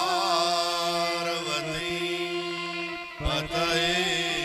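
A man singing a devotional chant in long, wavering held notes over a steady drone of accompaniment.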